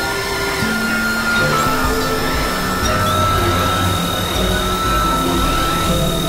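Experimental electronic drone and noise music: several held synthesizer tones that step to new pitches every second or two, over a steady noisy haze and a low rumble.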